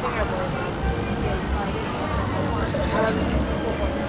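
Outdoor background: a steady low rumble with faint, distant voices.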